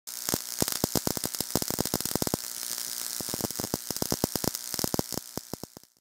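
High-voltage electrical discharge sparking inside a foil-lined glass jar: a steady buzzing hiss broken by rapid, irregular sharp cracks of the sparks. The cracks thin out and the sound fades away near the end.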